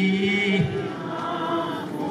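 A man's voice singing a long held note over a sound system, breaking off about half a second in, then quieter singing that fades out.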